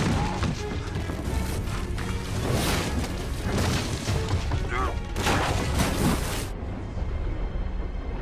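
Film battle soundtrack: orchestral music under repeated booming impacts and smashing, splintering wood, the strokes about a second apart. Near the end the sound turns suddenly muffled, as if heard from underwater.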